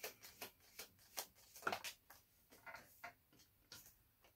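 Tarot cards being shuffled and handled by hand: a faint, irregular run of soft card flicks and taps.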